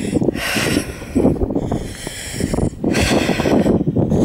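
Wind gusting over the camera's microphone, rising and falling unevenly in rushing swells.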